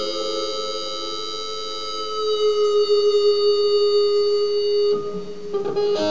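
Electric guitar played through a Line 6 Spider amp, holding one long sustained lead note that swells about two seconds in and rings for about five seconds, then a few quick new notes near the end.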